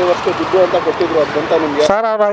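A man talking over steady street traffic noise. Near the end, the street sound cuts off abruptly.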